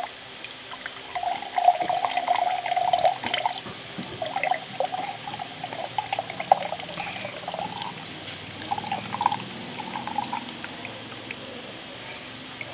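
Canned pineapple juice poured from the can's mouth into a glass mug, the stream splashing into the juice in uneven spurts and thinning to a trickle near the end.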